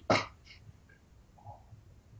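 A man's brief, breathy laugh.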